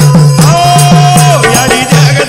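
Devotional folk music: a drum beating evenly at about four strokes a second, with a long held melodic note over it, then a wavering melody line near the end.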